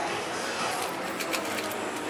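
A metal knife scraping and clicking against a small plastic cup as whipped cream is scooped out, with a few light clicks in the second half, over steady background noise.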